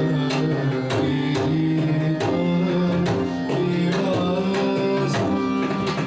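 Odissi classical music: a mardala, the two-headed barrel drum, struck by hand in a busy rhythm of several strokes a second, over sustained harmonium notes that move in steps.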